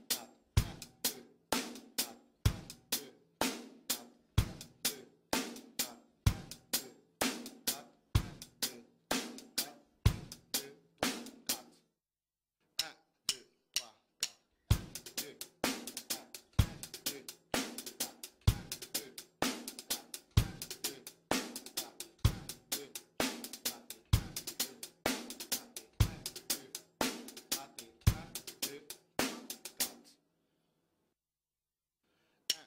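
Drum kit playing a reggae 'one-two' groove: a busy straight hi-hat pattern with snare strokes over a bass drum beat about every two seconds. The groove breaks off about twelve seconds in, with a few scattered strokes, then starts again about three seconds later and stops near the end.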